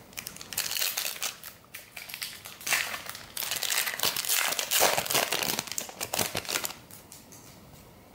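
A shiny trading-card pack wrapper being crinkled and opened by hand: irregular crackling rustles, busiest in the middle, dying away about a second before the end.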